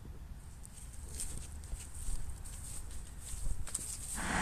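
Footsteps on dry fallen leaves and grass, a few faint irregular crunches, over a low rumble of wind on the microphone.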